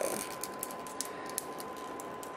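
A scatter of small irregular clicks and crinkles from a small plastic loose-pigment eyeshadow jar and its plastic wrapping being handled, as the wrapping is picked at. A faint steady high tone runs underneath.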